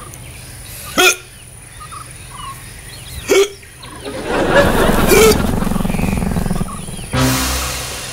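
A man hiccuping twice, about two and a half seconds apart, each a single short, sharp hic. A burst of music comes in near the end.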